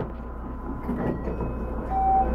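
Steady low hum inside a stationary 223-2000 series electric train, with faint scattered noises around it.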